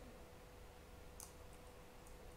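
A single faint keystroke on a computer keyboard about a second in, over near-silent room tone with a faint steady hum.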